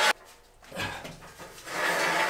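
A man breathing hard and panting with effort while heaving a heavy steel beam. There is a short breath about a second in, then loud, heavy breathing near the end.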